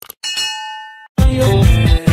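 Subscribe-button sound effect: two quick mouse clicks, then a bright bell-like ding with several steady ringing pitches that dies away in under a second. Just over a second in, loud electronic music with a heavy beat starts.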